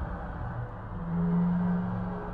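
Dark, ambient documentary background music: low sustained drone tones, with one held low note swelling louder about a second in.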